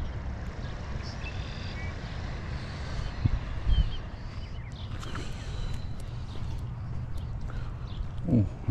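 A few faint, short bird chirps over a steady low rumble of wind on the microphone.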